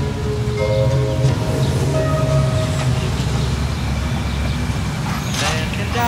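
Instrumental hip-hop outro: held, sustained notes over a steady low bass, with a short noisy whoosh near the end.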